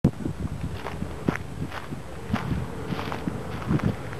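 Irregular footsteps scuffing and crunching on gravel near the microphone, several a second, with a faint steady hum underneath from about halfway in.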